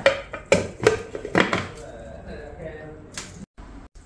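A few sharp clicks and knocks of a plastic mini-chopper bowl and its lid being handled on a kitchen counter.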